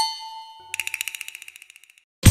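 A bright electronic ding from a TV channel's ident graphic, ringing and fading away. From under a second in, a quick run of rapid tinkling ticks follows and dies down.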